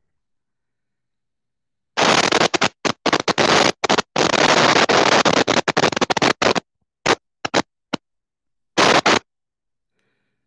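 Loud, harsh static-like noise from a participant's audio feed on a video call. It cuts in abruptly about two seconds in, runs with brief dropouts, then comes back in short bursts, the last just past nine seconds: an audio fault on the call.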